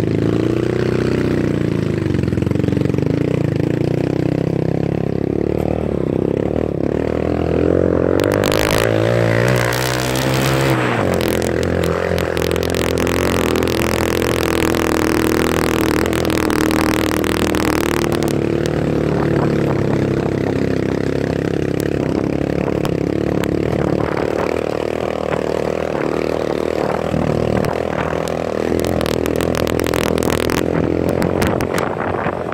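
Motorcycle engine running steadily under load on a rough dirt track, the revs rising from about eight seconds in and dropping back about three seconds later. A loud rushing noise lies over the engine for roughly ten seconds in the middle.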